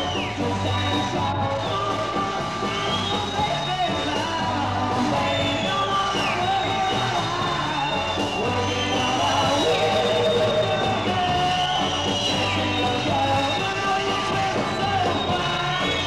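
Live rock and roll band playing with singing over a pulsing bass beat.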